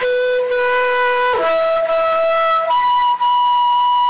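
Solo flute playing a slow melody: three long held notes, each higher than the last.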